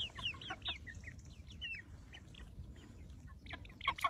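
Young white broiler chickens peeping as they forage: short, high, falling chirps, a quick run of them at the start, scattered ones through the middle and a louder burst near the end.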